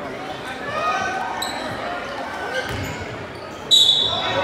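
Indoor basketball game on a hardwood court: spectators' voices and shouts over the ball bouncing and short shoe squeaks, then a loud, sharp referee's whistle blast near the end.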